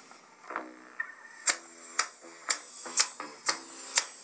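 Smartphone giving a short click about twice a second as its volume is stepped up with the side button.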